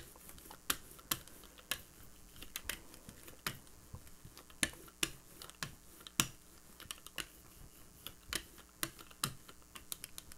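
Hand brayer rolled back and forth through acrylic paint on a gel printing plate: irregular sharp clicks and sticky crackles, about two a second.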